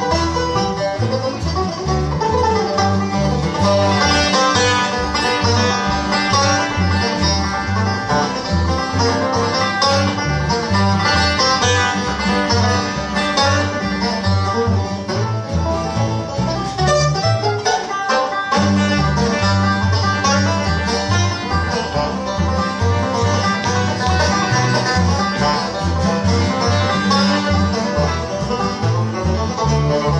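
Live bluegrass instrumental on resonator banjo, acoustic guitar and upright bass, the banjo carrying the lead over the guitar and bass rhythm. The bass drops out for a moment just past halfway, then comes back in.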